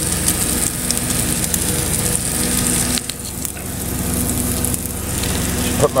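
Cheese omelette frying in a non-stick pan: a steady sizzle with fine crackling, over a steady low hum.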